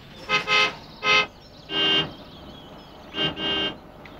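Car horns honking in short toots: a quick double toot near the start and another about a second in, then a lower-pitched horn about two seconds in and twice more near the end.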